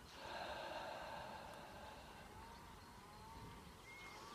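A person's slow audible breath, faint, loudest in the first second and then trailing off.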